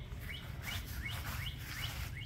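A small bird chirping repeatedly: short rising chirps in quick succession, about three to four a second.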